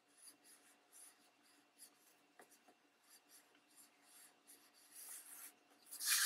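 Faint scratching of a wax crayon rubbed along the edge of a paper page in short strokes, a little louder near the end.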